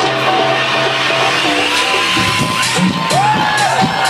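Electronic dance music from a DJ set, played loud over a club sound system, with a synth melody that slides up and down in pitch in the second half.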